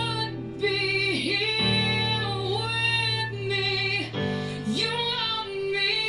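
Rock song with a woman singing long, wavering notes over low chords that strike anew about every two and a half seconds, with an electric guitar played along.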